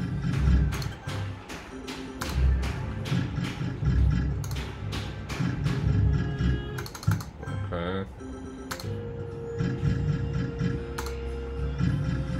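Book of Ra Classic slot machine running its free-spin sounds: electronic game jingles with rapid clicks as the reels spin and stop, spin after spin. A rising tone sweep comes about eight seconds in.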